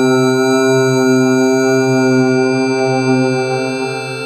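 Electronic computer music: a dense, sustained low drone of layered held tones with many overtones, horn- or foghorn-like, that eases off slightly near the end.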